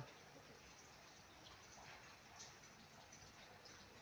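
Near silence: light rain falling faintly, a soft steady hiss with a few faint drips.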